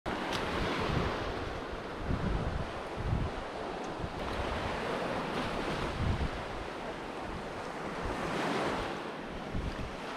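Ocean surf washing onto the beach, with wind buffeting the microphone in uneven gusts. A wave surges up a little past the middle.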